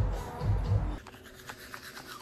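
Music with a low, thudding beat for about the first second, which cuts off abruptly. Then teeth are brushed with a toothbrush: quiet, uneven scrubbing strokes.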